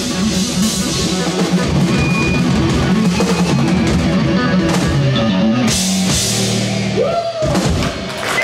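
Live hard rock band playing loud: distorted electric guitar over a drum kit with bass drum and cymbals. Near the end a few notes slide up and back down in pitch.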